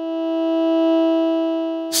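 ModBap Osiris digital wavetable oscillator holding one steady synth note with a formant waveform, its wavetable Y-axis set to the fifth harmonic: the pitch sits two octaves and a major third above the fundamental. The note swells louder to about the middle and eases back down.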